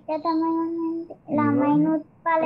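A child's voice chanting words in a sing-song, in two long, drawn-out phrases with a short break between them.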